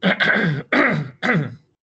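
A man coughing several times in quick succession, over about a second and a half.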